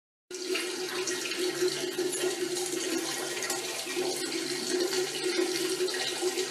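Steady rushing noise with a low hum running under it, starting just after a brief dropout at the start.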